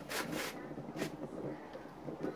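Sheet-metal scraping and rubbing as the perforated steel cylinder of a homemade TLUD pellet stove is handled on its base, with a short rasp near the start and a sharp click about a second in.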